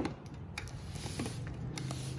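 A few faint clicks and light knocks from a centre-channel speaker cabinet being handled and set on its stand, over a low steady hum.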